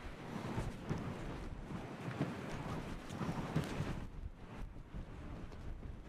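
Gusty wind buffeting the microphone, rising and falling unevenly, with a few faint knocks.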